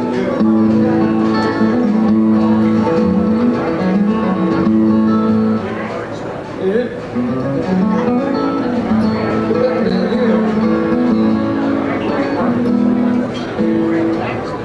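Two acoustic guitars playing an instrumental passage together, a moving melody over long held notes. The music dips briefly about six seconds in.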